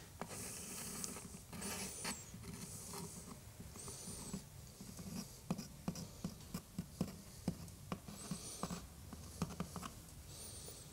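Faint squeaks and short hisses of a small tube of black silicone sealant being squeezed as a thin bead is laid along the edge of a plastic module, about every two seconds, with light ticks and taps from handling.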